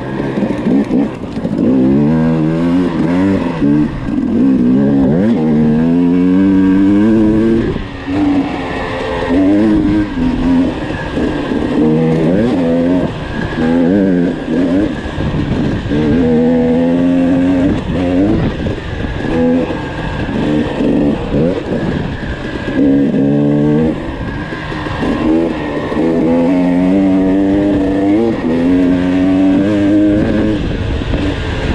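KTM dirt bike engine being ridden hard on a trail, its pitch climbing and dropping over and over with the throttle and gear changes.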